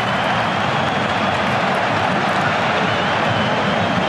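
Steady crowd noise of a football match broadcast, an even roar with no single sound standing out.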